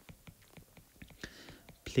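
Faint taps and scrapes of a stylus writing on a tablet's glass screen, with a soft whispered breath about midway.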